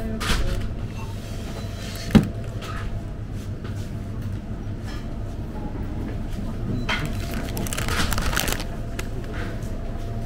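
Plastic shopping bag crinkling as it is handled over a shop's chest freezer, with one sharp knock about two seconds in, over a steady hum.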